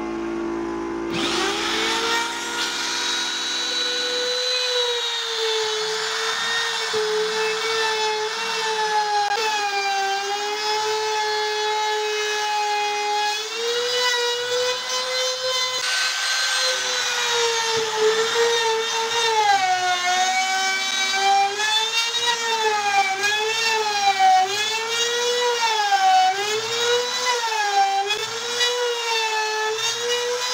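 Electric trim router spinning up about a second in and then cutting into plywood: a high steady whine whose pitch sags and recovers again and again as the bit takes load, most often in the second half.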